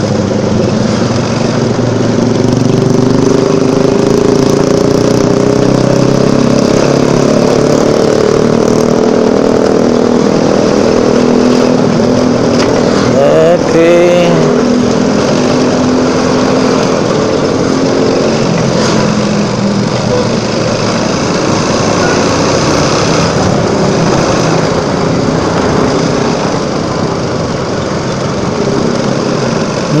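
Motorcycle engine running under way in city traffic, its pitch drifting up in the first few seconds, over a steady rush of wind and road noise.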